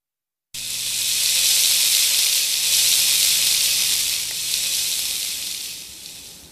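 Cartoon sound effect of rain falling, a steady hiss that starts abruptly about half a second in and fades away near the end.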